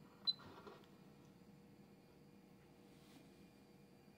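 One short, high beep from a Schneider Conext SCP control panel as a button is pressed, about a third of a second in, then near silence with faint room tone.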